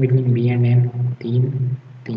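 A man's voice making long, drawn-out wordless sounds, held in stretches of under a second with two short breaks.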